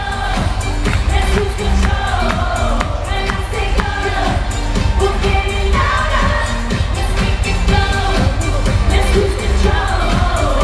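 Live pop music played loud through a concert PA: a woman sings over a heavy, steady bass beat, picked up from out in the audience.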